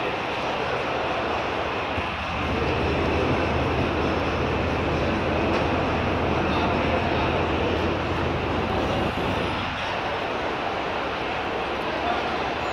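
Steady exhibition-hall din: indistinct voices mixing with a continuous low hum from machinery or ventilation.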